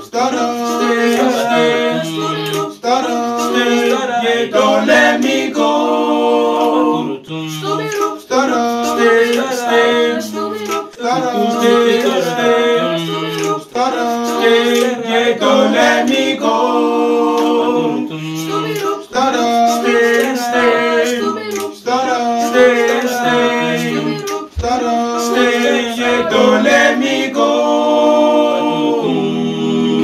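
A group of five boys singing a cappella in tight harmony, with a bass voice carrying a low line beneath the higher parts. The phrases run on with short breaths every few seconds.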